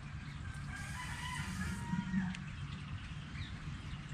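A faint, distant bird call lasting about a second, wavering in pitch, over steady outdoor background noise.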